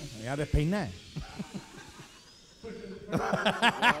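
Men laughing and chuckling into stage microphones, their voices wavering up and down; it dies down about a second in and breaks out louder again near the end.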